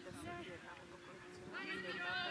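Faint talking, then a loud, high-pitched, wavering shout near the end.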